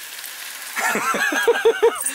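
Thin slices of pork sizzling in a frying pan on a gas stove, then a man bursts into hearty laughter about a second in, in quick rhythmic pulses that are the loudest sound.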